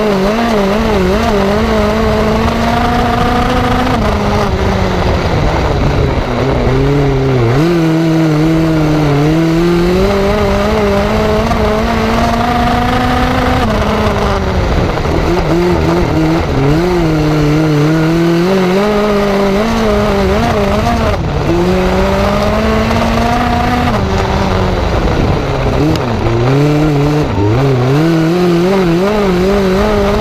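The Ecotec four-cylinder engine of a dirt-track midget race car at racing speed, heard on board. Its pitch climbs along each straight and drops sharply as the driver lifts for each turn, in a lap-after-lap cycle.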